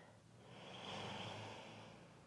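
A woman's single faint breath, a soft rush that swells and fades over about a second and a half, while she holds a downward-facing dog stretch.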